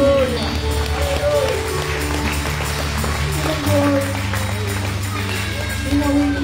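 Live worship music: an electric bass guitar holds long low notes, changing pitch about two-thirds of the way through, under a woman's voice on a microphone.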